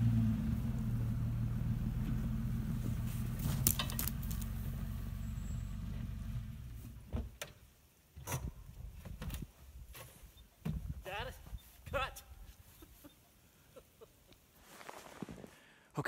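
Jeep engine running as the vehicle drives off towing a pumpkin on a rope over snow, its low rumble dying away about six or seven seconds in. After that, only scattered short clicks and brief faint sounds.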